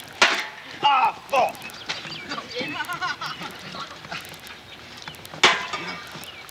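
A sharp hit just after the start as a folding chair is swung down onto a wrestler, followed by shouting voices and another sharp crash near the end.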